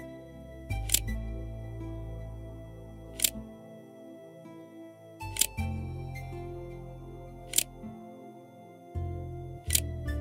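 Calm background music of sustained chords over a slowly changing bass line, with five sharp clicks spaced about two seconds apart.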